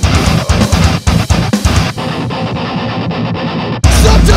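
Metalcore band recording with heavy electric guitars and drums, no vocals. About halfway through, the treble drops away and the sound thins and gets quieter; just before the end it cuts out for an instant and the full band comes back in louder.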